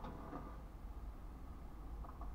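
Low steady rumble inside a stationary car's cabin, with a couple of faint clicks in the first half-second.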